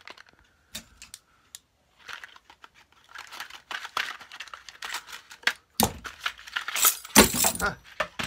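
Small brass shutter hinges clinking and rattling as they are handled and taken from their packaging, with rustling of the pack. The clinks and rustles come irregularly and are loudest in the last couple of seconds.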